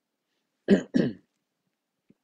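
A man clearing his throat: two short, sharp rasps about a third of a second apart, near the middle.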